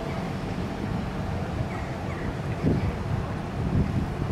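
Wind buffeting the microphone over a low, steady rumble, with two stronger gusts in the second half.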